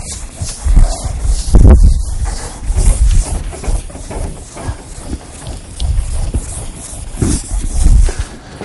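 Chalkboard eraser wiping across a chalkboard in repeated strokes. Heavy low rumbles and knocks from the boards being handled are loudest in the first two seconds or so.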